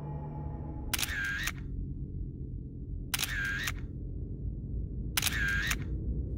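Soundtrack sound effects: three identical short bursts, each about half a second long and about two seconds apart, like a camera shutter or click-whoosh, over a low droning music bed.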